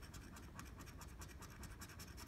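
Faint, quick scraping strokes of a lottery scratch-off ticket's coating being scratched off to reveal the prize amount.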